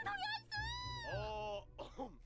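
A cartoon character's voice from the episode's soundtrack, heard at low level: a drawn-out, wailing line that rises and falls in pitch, with faint background music.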